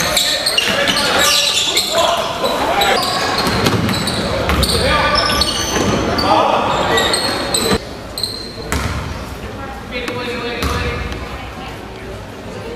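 Basketball game sound in a large gym that echoes: indistinct voices of players and spectators, with a ball bouncing and knocking on the hardwood floor. The sound drops in level about eight seconds in, where the footage changes.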